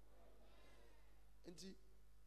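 Near silence over a steady low electrical hum, with a faint wavering voice-like sound under a second in and a man's brief words about one and a half seconds in.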